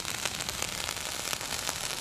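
Burnt-out potassium nitrate, sugar and crayon-wax smoke bomb crackling in its crumpled tin-foil wrapper as it dies down: a steady, dense crackle of fine pops.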